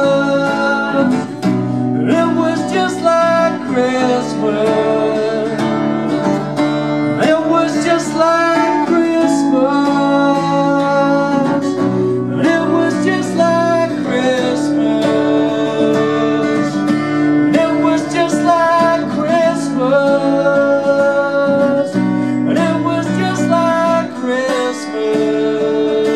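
Acoustic guitar strummed steadily while a man sings along into a microphone.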